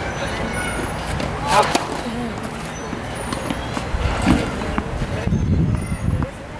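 Distant voices over a steady low outdoor rumble, with a few faint sharp knocks.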